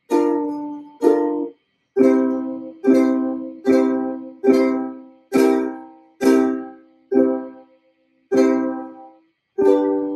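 Ukulele strummed one chord at a time, about once a second, each chord ringing out and fading away before the next, with short silent gaps between.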